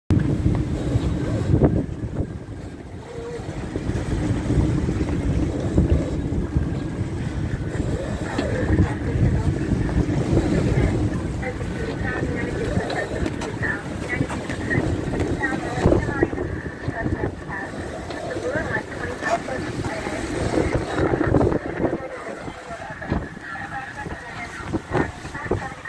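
Strong gusting wind buffeting the microphone on a sailboat running before the wind, a low rumble that swells and eases with the gusts, over the rush of breaking waves and wake past the hull.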